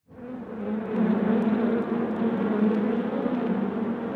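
Steady buzzing hum of a mass of honeybees, fading in just after the start.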